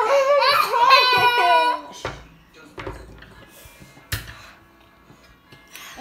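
A woman's loud wailing, half laughing and half crying, from the burn of the spicy noodles, for about the first two seconds. Then it goes quiet apart from a few clicks of a fork against a plate.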